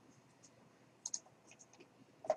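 Faint computer mouse clicks: a sharp pair of clicks about a second in, then a few softer clicks, as the settings page is saved.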